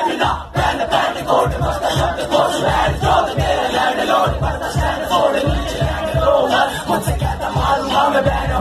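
Rapper shouting into a microphone over a bass-heavy hip-hop beat, with the crowd shouting along.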